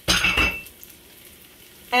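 A short knock and clatter of cookware with a brief ringing tone right at the start, then the faint sizzle of onions, raisins and pine nuts frying in olive oil in a large pan.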